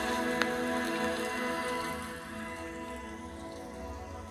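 Soft background music of long held tones under a light rain-like patter, fading gently towards the end, with one small click about half a second in.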